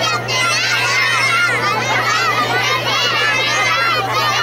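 Many children's voices at once, high-pitched and overlapping, as a group of children calls out or sings together. A steady low hum runs underneath.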